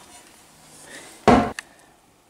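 A single short knock from a homemade rocker press, its heavy curved metal rocker striking the board beneath, a little past a second in, followed by a faint click.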